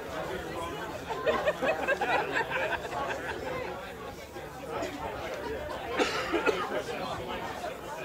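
Indistinct chatter of a seated audience, several people talking quietly among themselves, with a few louder voices about a second in and again near six seconds.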